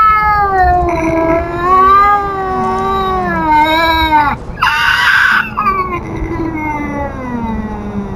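A cat's long, wavering yowls with a louder, harsher cry about five seconds in, then a drawn-out yowl falling in pitch. It is a feral cat's territorial warning, given face to face at an intruding cat.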